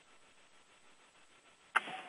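Near silence on a conference-call phone line, faint hiss only, broken near the end by a sudden click and a short burst of line noise as another caller's line opens.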